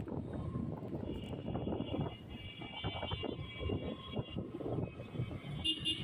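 Street traffic noise on a city road, a steady rumble of passing vehicles. A steady high-pitched tone sounds over it from about a second in until past the middle and returns briefly near the end.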